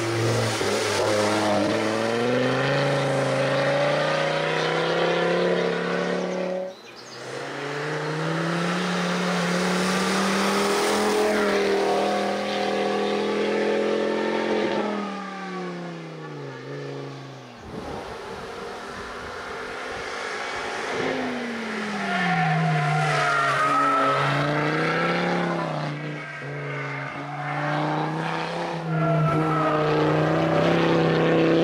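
Ford Focus ST hill-climb car's turbocharged five-cylinder engine revving hard up through the gears and easing off into hairpins, its pitch repeatedly climbing and dropping. The sound breaks off suddenly twice, about a quarter of the way in and just past halfway, as it jumps to another pass of the car.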